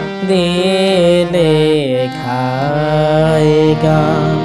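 Harmonium playing a slow melody over steady held notes, with a voice singing long, gliding notes along with it. A falling glide comes about two seconds in.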